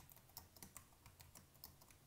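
Faint computer keyboard typing: a quick run of key clicks, several a second.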